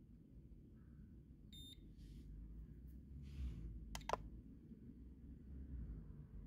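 A short electronic beep from a handheld HF antenna analyzer about one and a half seconds in, then two sharp clicks close together around four seconds in, over a faint low rumble.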